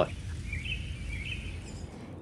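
Outdoor field ambience with a low rumble. A faint high-pitched wavering call starts about half a second in and lasts about a second.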